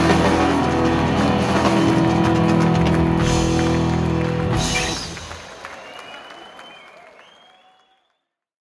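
Live rock band's closing chord held on electric guitars, bass and drums, cut off by a final drum-and-cymbal hit about halfway through. The ringing dies away under faint crowd applause and whistles as the sound fades out.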